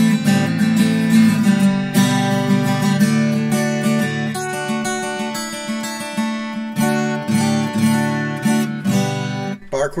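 Washburn WD10CE dreadnought acoustic guitar, spruce top with mahogany back and sides, played unplugged: open chords strummed and left ringing, moving to a new chord every couple of seconds.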